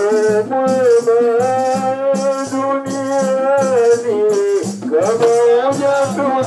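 A Swahili Islamic qaswida: a voice sings one long, wavering held note over an even beat of shakers and low drum strokes.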